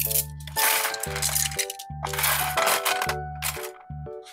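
Bundles of bamboo knitting needles and crochet hooks clattering as they are dropped and settled into a plastic storage box, in several short bursts, over background music with a steady bass beat.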